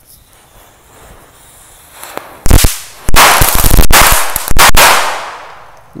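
A cluster of small foil-wrapped firecrackers going off: one sharp bang about two and a half seconds in, then a dense run of loud bangs and crackling for about two seconds before it dies away.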